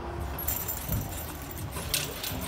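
Metal clinking and jangling from the still rings' cables and fittings as a gymnast swings through on them, with a sharper clink near the end.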